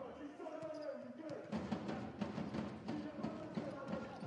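Arena sound of a volleyball rally: a run of sharp knocks from the ball being served and played, over crowd voices and background music.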